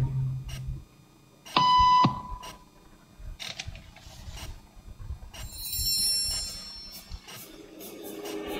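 A single short electronic beep tone, about half a second long, about one and a half seconds in: the signal tone that cues the people in the waiting room to stand up.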